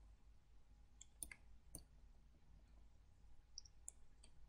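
Near silence broken by a few faint computer mouse clicks: three in quick succession a little after a second in, and one more near the end.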